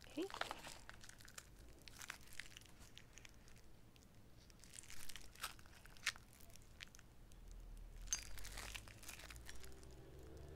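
Faint rustling and crinkling of packaging with scattered light clicks and taps as metal cake-decorating piping tips are taken out and handled.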